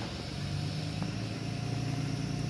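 A steady low engine hum that grows slowly a little louder, with a faint click about a second in.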